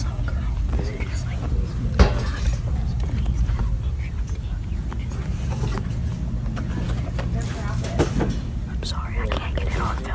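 Hushed whispering over a steady low rumble, with a sharp knock about two seconds in and another near the end.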